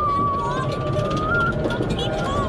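A rider's long, held high-pitched cry, slowly rising in pitch, over the rumble and wind noise of a roller coaster train tipping over the crest into the drop.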